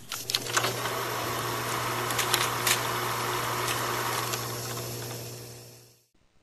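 Mechanical whirring sound effect with a steady low hum and a few scattered clicks, fading out about five seconds in.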